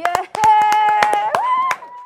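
A few people clapping in uneven, scattered claps after the song ends, over a high, held 'woo' cheer that rises in pitch about halfway through.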